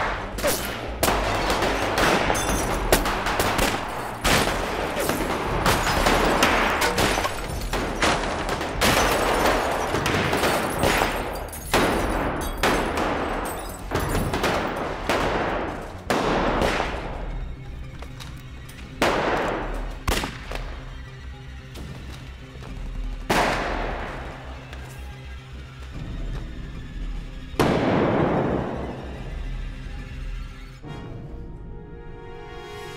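Gunfire in a film gunfight: rapid, dense shots for about the first half, thinning to single shots every few seconds, each with a long fading tail, over background music.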